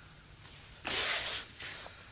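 Karate gi fabric swishing as the karateka moves through the kata: one loud half-second swish about a second in, then a shorter, fainter one near the end.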